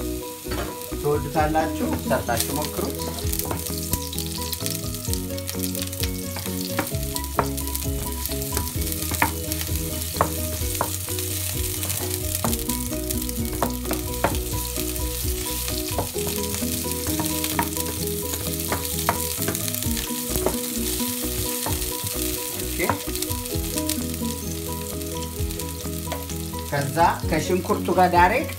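Sliced red onions sizzling steadily in hot oil in a nonstick frying pan, stirred now and then with a wooden spoon that clicks and scrapes against the pan. A steady low hum runs underneath.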